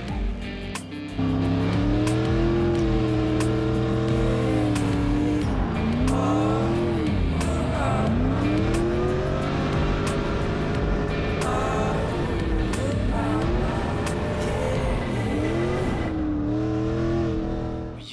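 LS7 V8 in a drifting BMW M3 revving hard, its pitch climbing and dropping again and again as the throttle is worked through the slides, with tyre squeal under it. The engine gets much louder about a second in. Music plays underneath.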